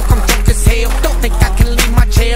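Background music with a steady drum beat and a deep bass line.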